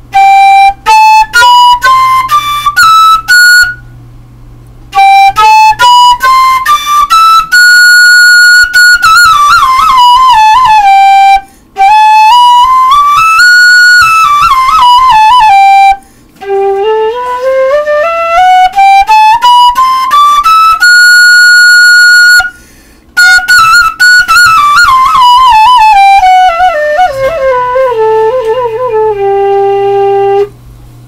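Six-hole PVC transverse flute playing stepwise scales note by note, up into the upper octave and back down, in clear pure tones. Several runs are separated by short breaks, and the last is a long descending scale ending on a held low note.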